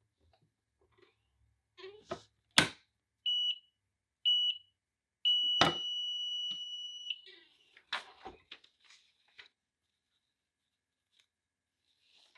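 Heat press in use for a pre-press: two sharp clunks from the press, with its timer sounding two short beeps and then one long beep of about two seconds, followed by a few seconds of rattling and clicks as the press is worked.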